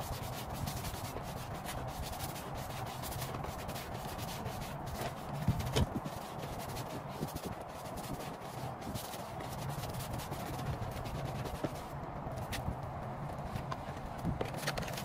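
Repeated rubbing and scrubbing strokes as a rubber car floor mat is washed by hand with soapy water, with a couple of louder knocks a little past the middle.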